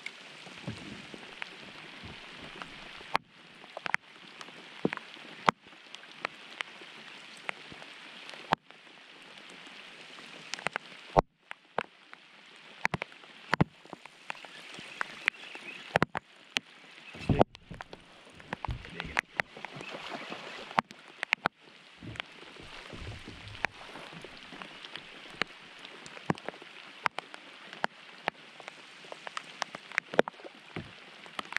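Steady rain hiss with many sharp, irregular ticks of raindrops striking the plastic bag wrapped around the camera. A few low bumps come in the middle.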